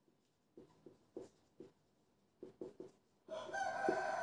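Marker pen writing on a whiteboard: a string of short, faint strokes. About three seconds in, a long held call from a bird starts in the background.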